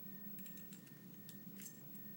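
A few faint, light clicks of steel forceps working inside the metal AK-47 cleaning-kit tube, picking out packed cotton.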